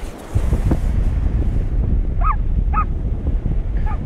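Wind buffeting the microphone in a heavy low rumble. A little past halfway come two short, high-pitched barks from a Shetland sheepdog chasing seagulls.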